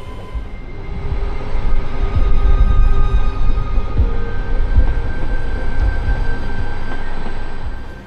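SBB Giruno (Stadler SMILE) electric multiple unit running over the station pointwork: a loud low rumble that swells about a second in and eases near the end, with steady electric hums above it.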